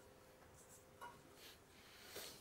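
Faint scratching of a marker on a whiteboard writing a few short strokes of numbers.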